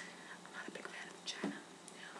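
Quiet whispered speech, a few faint breathy syllables over a low steady room hum.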